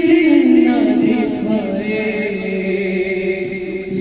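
Unaccompanied noha, a Shia lament, chanted by a young male reciter into a microphone. From about a second in, a long lower note is held.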